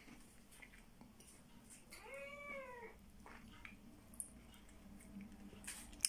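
A single short meow from a cat, rising and then falling in pitch, in an otherwise near-silent room.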